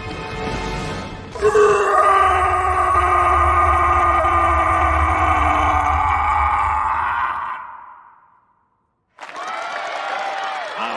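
Background music, then about a second and a half in a loud, long roar from the animated Frankenstein's monster, held for about six seconds, sinking slightly in pitch and fading out.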